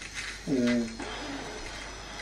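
Small battery nose hair trimmer buzzing faintly while held in a nostril. About half a second in there is a short hummed vocal sound from the man using it.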